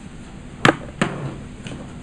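Two sharp knocks about a third of a second apart, the second trailing off briefly, over a steady faint background noise.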